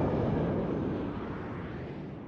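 The tail of an explosion-like boom sound effect: a deep, noisy rumble fading steadily away.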